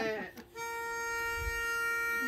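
Barbershop quartet's pitch pipe sounding a single steady reedy note, held for about two seconds from about half a second in, to give the singers their starting pitch.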